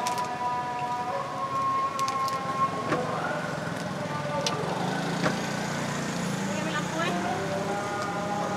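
A distant call carries through on long, held notes that waver slowly in pitch, like a siren. Close by, a plastic bread bag crinkles and crackles in short bursts as burger buns are handled.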